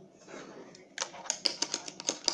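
Fingerboard clacking on a homemade wooden ledge edged with metal angle: a soft scuff, then from about halfway through a quick run of sharp clicks and taps as the board's deck and trucks strike the ledge and table.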